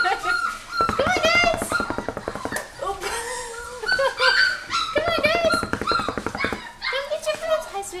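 Pointer-mix puppies whining and squealing with short, high, wavering cries as they crowd around a shallow metal feeding pan, over a steady patter of small clicks from eating.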